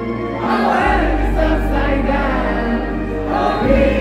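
Live pop concert music as heard from the audience: a woman singing over an amplified electronic backing with deep bass. The bass comes in about a second in and drops out briefly near the end.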